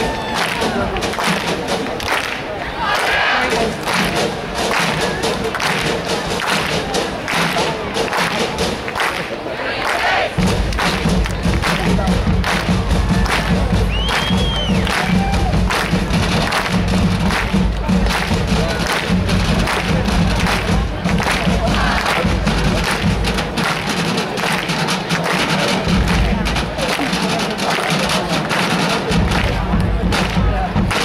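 Marching band playing: a steady beat of drum hits throughout, joined about ten seconds in by low brass and full band sound.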